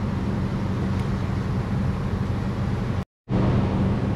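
Steady low mechanical hum of background machinery, with no other events. It cuts out for a moment about three seconds in and then resumes.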